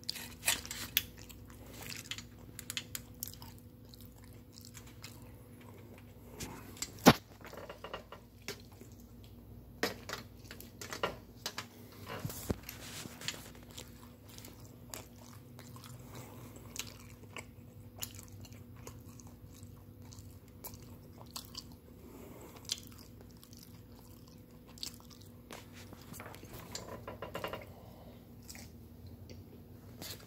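Close-up mouth sounds of someone biting and chewing a tortilla-wrapped food: scattered wet smacks and crunches, the sharpest about seven seconds in, over a faint steady hum.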